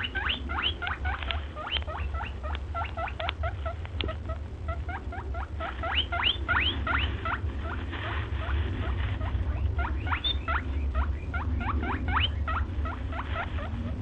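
Rapid high-pitched squeaking chirps from a small animal: many short calls a second, each sweeping upward in pitch, over a steady low hum.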